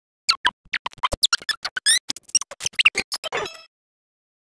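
A cartoon soundtrack sped up 25 times, squeezed into a dense three-second burst of squeaky chirps, blips and clicks that starts about a third of a second in and stops about half a second before the end.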